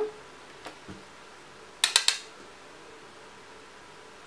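Three quick, sharp clicks of a makeup brush knocking against a hard eyeshadow palette, about two seconds in, after a couple of fainter ticks.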